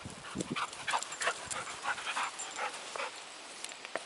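A puppy panting, short breaths at about three a second.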